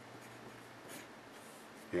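Pencil writing on paper: faint scratching strokes as a few digits and a bracket are written.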